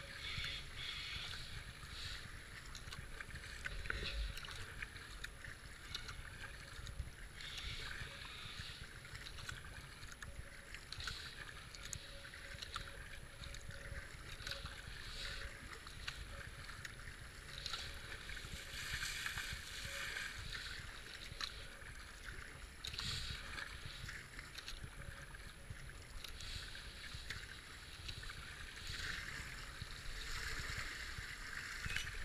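Kayak paddle strokes splashing into fast-moving floodwater, repeated every second or so, over the steady rush of water along the hull.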